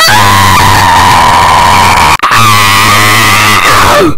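A very loud, distorted scream held at a steady pitch, clipping at full volume, in two long stretches with a short break about two seconds in.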